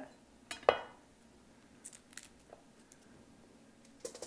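A chef's knife cutting through cauliflower onto a wooden cutting board: two sharp knocks about half a second in, the second louder, then a few faint light clicks and taps.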